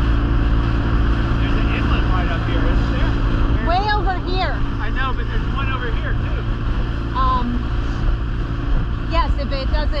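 Dinghy outboard motor running steadily underway, a constant low hum beneath rushing water and wind.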